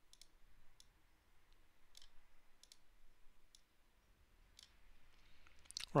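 Faint, scattered clicks, about six spread over several seconds, from clicking and dragging items on a computer.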